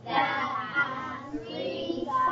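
A child's voice singing.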